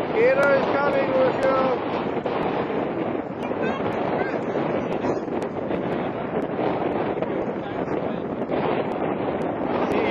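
Wind buffeting the microphone over the steady wash of shallow surf at the shoreline. A child's high voice calls out over it for about the first two seconds.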